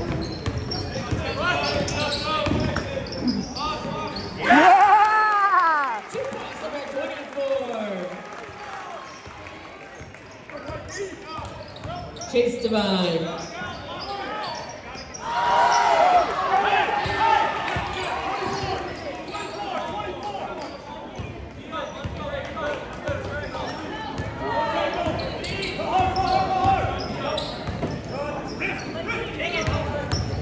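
Basketball dribbled on a hardwood gym floor during play, with players and spectators calling out and shouting, in a large echoing gym. The loudest shout comes about five seconds in.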